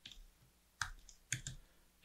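Computer keyboard typing: four separate faint key clicks, the last two in quick succession.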